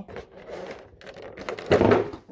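Plastic packaging scraping and rattling as a lip-shaped perfume bottle is worked out of its plastic insert. A loud clatter comes near the end as the bottle comes free.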